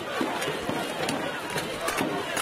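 Crowd noise with shouting voices from the arena, cut by a few sharp clanks of steel weapons striking plate armour in a full-contact armoured melee.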